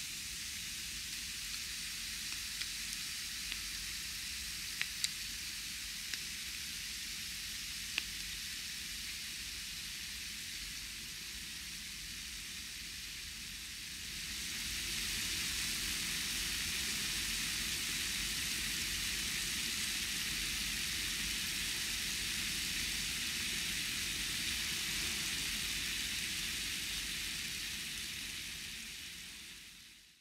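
Steady hiss-like noise with a few small clicks in the first eight seconds. About fourteen seconds in it gets louder and brighter, then fades out near the end.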